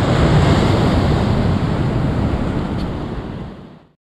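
Heavy ocean surf breaking and washing over boulders at the foot of a seawall, with wind buffeting the microphone. The sound fades out near the end.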